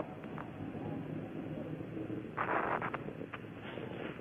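Steady hiss of an open radio/communications loop cut off above about 4 kHz, with a short crackling burst about two and a half seconds in.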